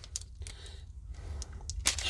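Plastic clicks from a Super7 vintage He-Man action figure as its spring-loaded waist is twisted and let go, swinging the torso back in its punch action. About half a dozen sharp clicks; the loudest comes near the end.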